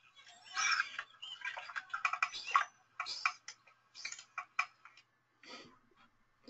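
Bottlenose dolphin calf vocalizing underwater: an irregular jumble of short clicks and brief whistle fragments, some gliding in pitch. These varied, babbling-like sounds come from a calf that has not yet settled on its own signature whistle.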